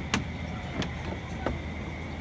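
Footsteps on wooden decking, three sharp steps at an even walking pace over a steady low hum of outdoor background.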